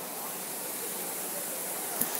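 Steady rush of falling water from a stepped waterfall fountain, an even hiss without break.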